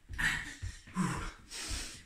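A man breathing hard with about three forceful breaths, over quick, soft repeated footfalls of high knees sprinted on the spot.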